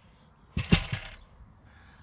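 Removed plastic interior trim panel being set down in the cargo area: a short plastic clatter of two sharp knocks about half a second in, the second louder.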